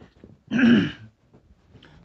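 A man clears his throat once, a short loud sound about half a second in that falls in pitch.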